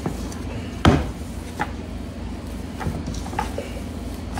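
Hands kneading ground venison and sausage seasoning in a stainless steel bowl: soft squishing, with a sharp knock about a second in and a few lighter clicks after.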